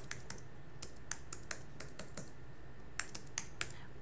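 Typing on a computer keyboard: light, irregular key clicks, with a pause of about a second in the middle.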